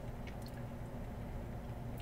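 Quiet room tone: a steady low hum with a few faint soft ticks in the first half second.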